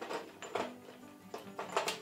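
Soft background music with held notes, with a few light clicks of glass as a glass globe is settled onto its stemmed glass base; the sharpest click comes near the end.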